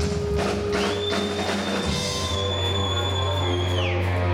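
Live rock band playing: drum kit strokes in the first second or so over a sustained bass note. A held high tone comes in about a second in and slides down just before the end.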